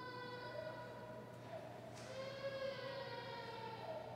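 Slow hymn melody in long held notes that glide from one pitch to the next, over a low steady hum.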